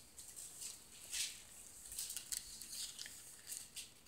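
Faint rustling of paper pages being turned and handled while a passage is looked up: a few short, soft rasps, the clearest about a second in.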